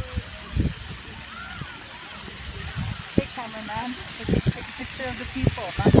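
Distant children's voices over the steady hiss of splash-pad water jets, with a few low thumps on the microphone.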